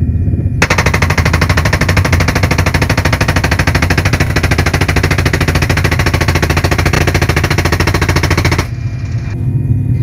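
A door-mounted PKM 7.62 mm belt-fed machine gun fires one long sustained burst of about eight seconds, starting about half a second in. Under it is the steady drone of the Mi-171Š helicopter's engines and rotor.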